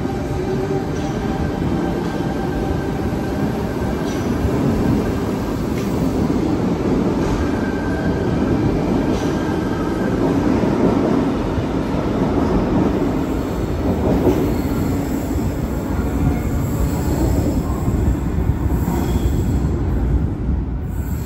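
Sydney Trains Tangara double-deck electric train moving through an underground station: a continuous loud rumble of the carriages running past on the rails, slightly louder about halfway through.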